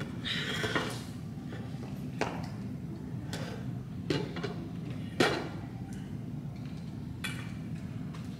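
Sharp knocks and clinks of a weight plate being picked up and handled, about five of them with the loudest about five seconds in, over a steady low room hum.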